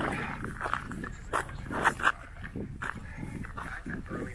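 Standard poodles panting and footsteps crunching over rocky ground, with two sharp, louder sounds close together about two seconds in.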